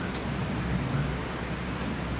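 Steady hiss with a low electrical hum from an open microphone channel while a headset microphone is being put on.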